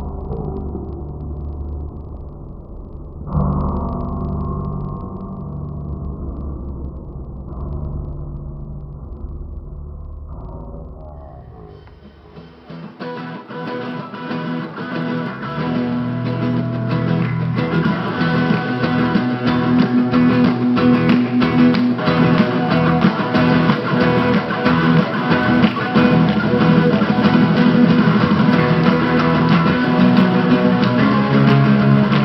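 Guitar band music, muffled and dull for about the first twelve seconds, then opening up into a full band sound with guitar that grows louder.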